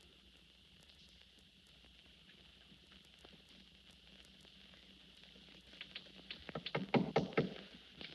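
Knocking on a door: a quick run of raps about six seconds in, lasting about two seconds, over the faint steady hiss of an old film soundtrack.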